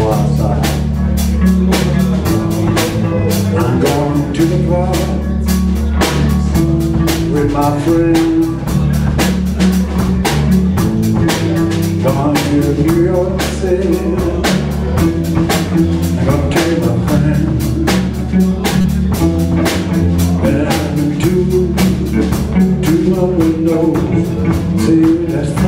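Blues band playing: electric guitar and bass guitar over a drum kit keeping a steady, even beat.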